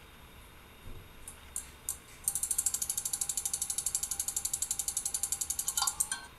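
A rapid, evenly spaced run of mechanical clicks, about a dozen a second, starting about two seconds in and stopping abruptly near the end, with a faint steady tone beneath it. A few isolated clicks come before it.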